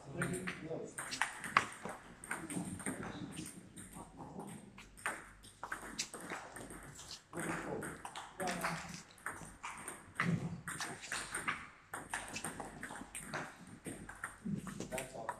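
A table tennis ball being struck by the bats and bouncing on the table during rallies: a string of sharp, irregular clicks. Voices talk in the background.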